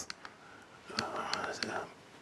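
A man's voice, low and muttered, almost whispered, with a few faint clicks.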